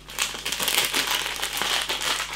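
Plastic snack packet of pork crackling crinkling and rustling irregularly as it is handled and pulled open.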